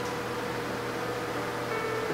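Steady background hum and hiss with a faint held tone, and no distinct event: room tone.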